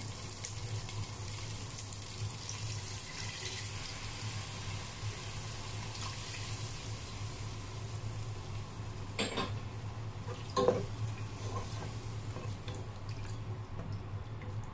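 Pork belly frying in a pot as pork-cube broth is poured over it, the sizzle giving way to the sound of liquid sloshing and simmering. Two sharp knocks come later on.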